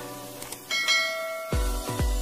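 Bright bell chime sound effect, as for a subscribe-and-bell animation, ringing about two-thirds of a second in over soft picked music notes. An electronic beat with a deep kick drum starts in the last half-second.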